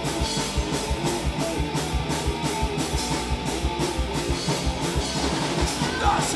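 Punk rock band playing live: electric guitars and a drum kit in an instrumental passage, with a steady beat and cymbal hits about four times a second.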